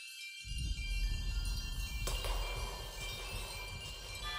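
Trailer score of high, sustained chiming tones, joined under half a second in by a deep low rumble, with a sharp hit about two seconds in.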